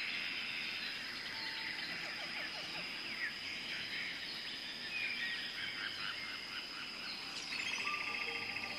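Mangrove forest ambience: various birds chirping and calling over a steady high-pitched insect drone, with a fast trill near the end.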